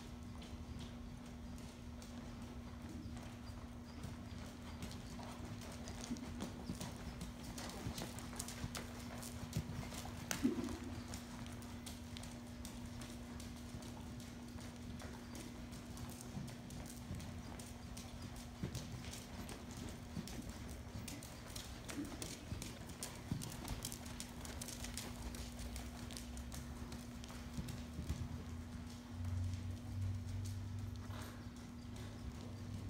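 Hoofbeats of a ridden horse moving around an indoor arena on sand footing, a continuous run of soft hoof strikes. A steady low hum runs underneath, and there is one louder sound about ten seconds in.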